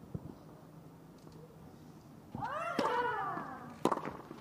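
Female tennis player's long grunt as she strikes her serve, wavering up and down in pitch for about a second and a half. A sharp racket-on-ball strike comes near the end.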